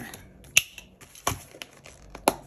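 Sharp plastic-and-metal clicks as clear plastic cash envelopes are pressed onto the rings of an A6 binder: a few clicks, the loudest about half a second in and another a little past a second, with light plastic rustling between.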